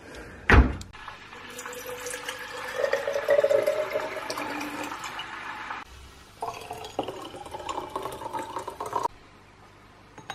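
A cupboard door thumps shut about half a second in, then water is poured from a kettle into a baby bottle in two pours, the first rising in pitch as the bottle fills; the sound stops abruptly after about nine seconds.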